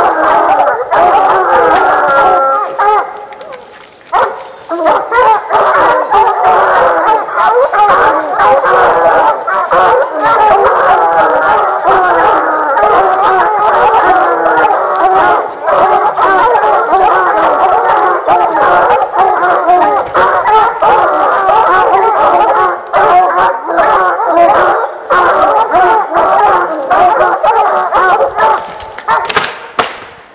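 A pack of bear hounds baying and howling over one another without pause at a black bear treed above them, with a brief lull about three to four seconds in.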